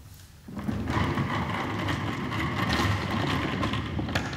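A wooden table being pushed across a stage floor, scraping steadily for about three and a half seconds from half a second in.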